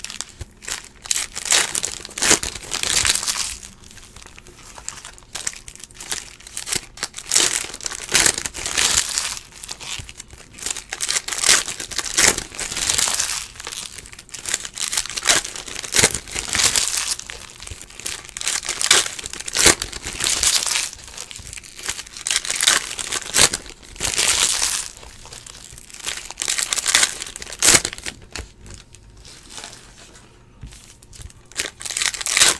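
Foil trading-card pack wrappers crinkling in irregular bursts as they are handled and torn open by hand.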